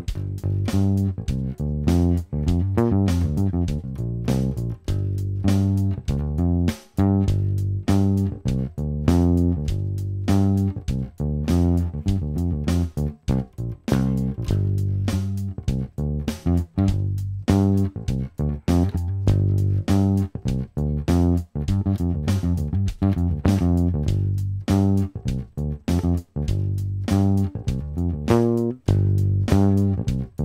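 Fender Precision bass strung with low-tension Thomastik flatwound strings playing a jam line on the G minor pentatonic scale, with a few extra notes, over a straight pop drum track at 100 beats per minute.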